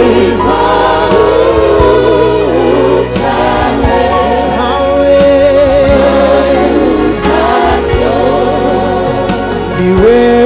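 A choir and worship band performing a Swahili gospel song live, with voices singing over bass and a steady drum beat.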